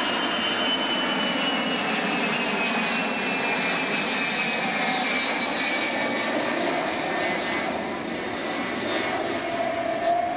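Four-engined jet airliner passing low overhead on approach: a steady, loud engine roar with a high whine that slowly falls in pitch as it goes by.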